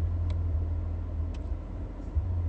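Low, steady rumble of a car heard from inside the cabin, with a couple of faint clicks.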